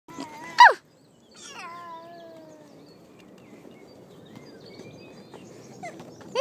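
A baby's high-pitched squeal that drops sharply in pitch, a little over half a second in, followed by a longer, gently falling vocal call lasting over a second.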